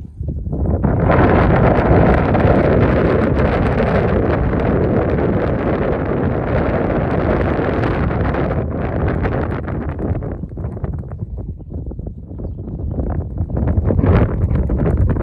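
Wind buffeting the microphone: a loud rumbling rush that comes up about a second in, thins out after about eight seconds and builds again near the end.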